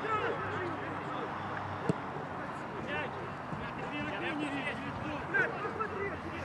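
Footballers' indistinct shouts and calls during play, with one sharp knock about two seconds in.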